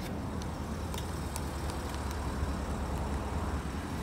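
Porsche Cayenne S 4.8-litre V8 idling, a steady low rumble, with a few light clicks.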